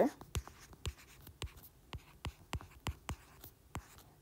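Stylus tapping and clicking on a tablet's glass screen while writing numbers by hand. It makes a series of irregular light ticks, a few per second.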